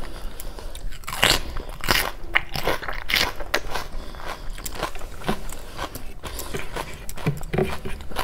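Close-miked wet chewing and lip smacks of a person eating curry and rice by hand, with squelches of fingers mixing rice into gravy on a plate. The smacks come irregularly, a few each second.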